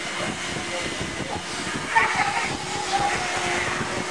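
Shop vac running steadily, its motor hum and airflow hiss drawing the air out of a trash bag that a person is sitting in to vacuum-seal it. Voices and laughter come in over it about halfway through.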